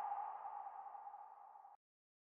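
Logo-sting sound effect: a single synthesized tone that rings on and fades away, dying out within the first second and a half or so.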